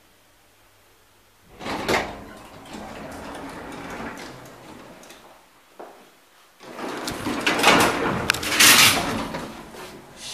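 An old elevator's automatic sliding doors. They open with a sudden rush about a second and a half in, there is a click near the middle, and then they close with a louder, longer rush near the end.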